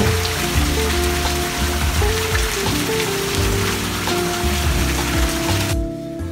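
Background music over a steady hiss of running water. The water hiss cuts off suddenly near the end, leaving the music alone.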